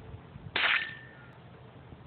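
A single gunshot fired at a beer bottle, a sharp crack about half a second in, followed by a short, thin ringing tone. The shot missed the bottle, though it sounded like a hit.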